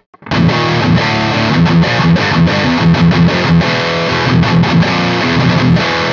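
Heavily distorted electric guitar playing a chugging riff through the Lichtlaerm King in Yellow overdrive pedal, its low knob turned up for more low end. It starts about a quarter second in, after a brief silence.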